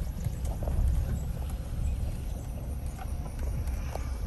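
Low, steady rumble of a vehicle heard from inside the cab as it rolls over rough farm ground, with a few light knocks.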